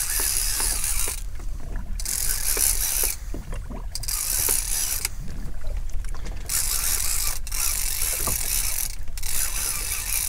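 Multiplier reel on a heavy boat rod being cranked against a heavy fish, a big ling: a gear rasp in runs of a second or so with short pauses between.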